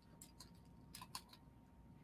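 Near silence, broken by a few faint, small clicks of a beaded necklace being handled and adjusted on a display bust.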